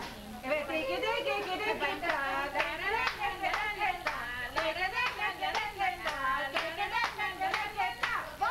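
Group of people clapping in a steady rhythm, a little over two claps a second, starting about two seconds in, with several voices calling out and singing over it.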